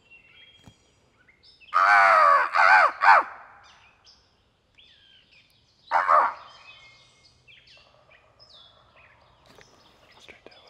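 Crow caws, loud and close: three harsh caws in quick succession about two seconds in, then a single caw a few seconds later. Faint bird sounds follow, with a faint distant turkey gobble near the end.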